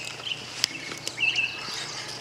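A songbird's short chirps, one at the very start and another a little past a second in, with a single sharp click between them.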